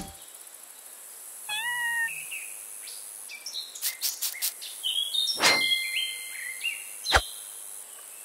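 Cartoon sound effects over a quiet background hiss. A short squeaky call comes about a second and a half in, then a quick run of clicks near the middle. Whistling tones and two thumps follow, the sharper thump near the end.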